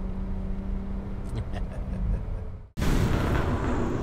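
BMW 1 Series (E8X) cabin sound while driving: a steady engine hum over road noise. About three-quarters of the way through it cuts off abruptly, and a louder rumbling noise follows.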